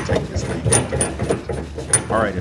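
Small metal cover fitting being screwed by hand onto a gas fireplace's valve stem, giving a run of light, irregular metallic clicks, about three a second.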